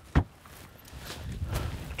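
A single sharp knock from a plastic cooler lid being pressed shut, just after the start, followed by a low rustle that grows louder toward the end.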